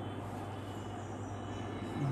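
Steady low hum with an even background hiss; no distinct strokes or knocks stand out.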